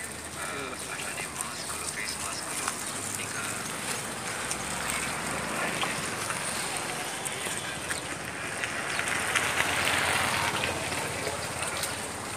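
Outdoor roadside ambience: background voices talking, with steady traffic noise that swells briefly near the end as a vehicle passes.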